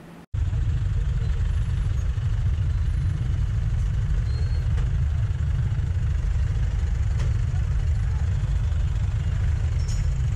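A motorcycle runs at low speed with a steady low rumble, picked up by a camera mounted on the bike, cutting in abruptly after a brief dropout just after the start.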